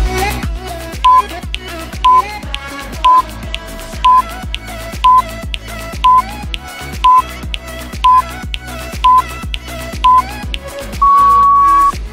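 Workout interval timer counting down: ten short high beeps a second apart, then one longer beep of about a second marking the end of the interval, over background dance music.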